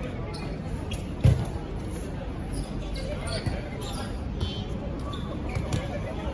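Dodgeballs thudding as they are thrown and hit the court or players, one loud thud about a second in and several lighter ones later, over players' voices calling out.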